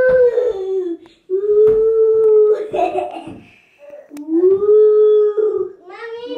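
A child's voice making long, wordless howling calls, each drawn out for about a second, rising and then falling in pitch, several in a row.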